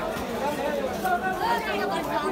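Several people talking at once in the background: overlapping market chatter of vendors and customers, with no single voice standing out.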